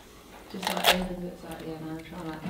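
Pomegranate rind cracking and tearing as the fruit is pulled apart by hand, with a short crackly burst in the first second, under a drawn-out voice.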